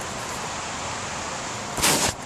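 Steady hiss of rain falling, then a short loud whoosh near the end.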